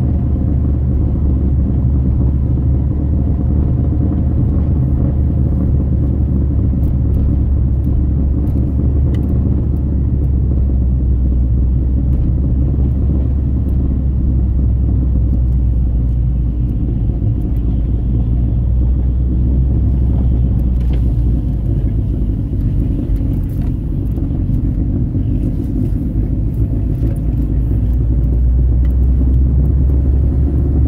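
Steady low rumble of a 2001 Saab 9-5 Aero under way, heard from inside the cabin: the engine and tyre and road noise of a car cruising down a paved mountain road. The pitch of the engine shifts a little partway through, and the sound grows slightly louder near the end.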